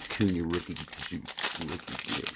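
Plastic trading-card pack wrapper crinkling as it is torn open by hand, a dense run of short crackles.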